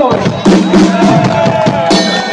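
A drum kit being struck in a short run of hits, mixed with voices.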